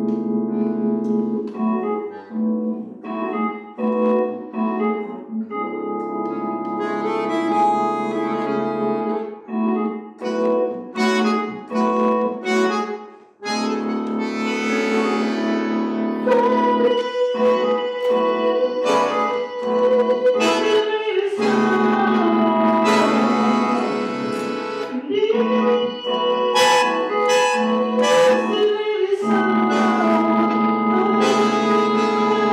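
Bandoneon and electric keyboard playing an instrumental passage together: short repeated chords for the first dozen seconds, a brief break, then held chords under a melody line.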